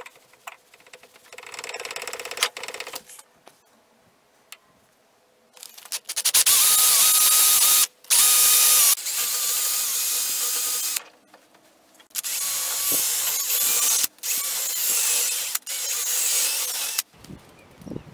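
Electric drill spinning a wire brush inside the eye of a rusty hammer head to scour out the rust. It runs in several bursts of one to three seconds, loudest in the first two, with a steady motor whine. Before that comes a quieter scraping of about two seconds.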